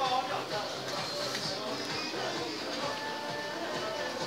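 Background music playing with indistinct voices of people in a busy shop.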